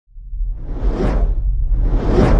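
Cinematic whoosh sound effect of a title intro, over a deep low rumble, swelling to a peak about a second in and fading away; a second whoosh starts right at the end.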